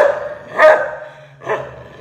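A dog barking twice: a loud bark about half a second in and a weaker one about a second and a half in.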